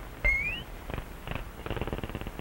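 Early sound-cartoon effects: a sudden short high whistle that slides upward about a quarter-second in, then a rapid buzzing rattle starting about a second in and running on.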